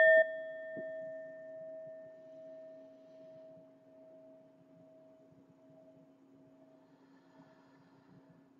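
Brass singing bowl ringing after a mallet strike, one clear tone slowly dying away over about seven seconds. Its higher ring is cut short just after the start, leaving the lower note to fade.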